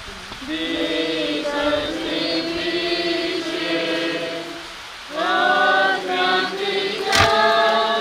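A group of people singing a hymn together in long held notes, with a short pause between lines about two-thirds of the way through. A sharp thump sounds near the end.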